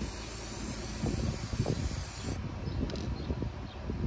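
Aerosol spray paint can hissing in one steady spray for a little over two seconds, then stopping.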